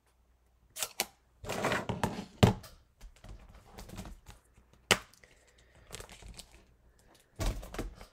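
Stamping handling sounds: a plastic ink pad case and a clear acrylic stamp block clicking and knocking as the stamp is inked and pressed, with a short rustle and two sharp clicks.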